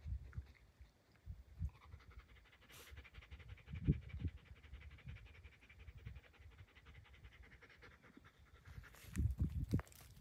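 A German Shepherd dog panting quickly and steadily, with its tongue out. A few low thumps come and go, the loudest near the end.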